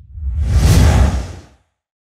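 A whoosh sound effect over a low rumble, swelling up about a quarter second in and fading away by about a second and a half.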